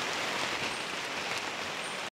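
Steady rain falling on the forest, an even hiss with no breaks.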